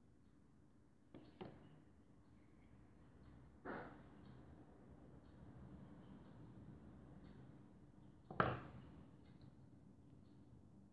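Quiet room with a few short light knocks and taps as a plastic frill cutter and a needle modelling tool are handled on a silicone mat over fondant: two close together about a second in, one near four seconds, and the loudest about eight and a half seconds in.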